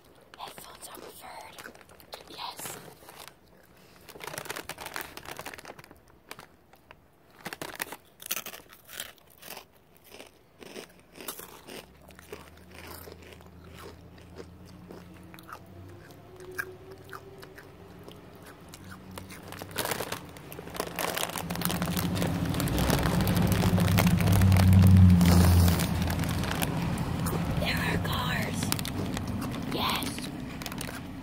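Close-miked ASMR mouth and handling sounds: soft clicks and crackles with low whispering. A low hum comes in about halfway, swells to its loudest a little before the end, then eases off.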